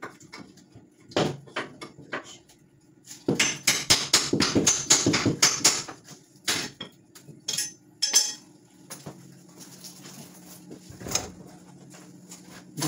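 Metal tools and hardware clattering: a quick run of knocks and clinks from about three to six seconds in, then a few single knocks.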